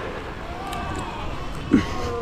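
Cape fur seal pups bleating: long wavering calls, with one short loud sound near the end.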